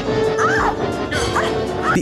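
Horror film soundtrack excerpt: music under a few short, high cries that rise and fall in pitch, about half a second and a second and a half in.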